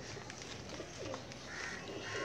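A bird cooing faintly, with the soft hiss of dry soil being poured from a plastic pot into a bonsai pot.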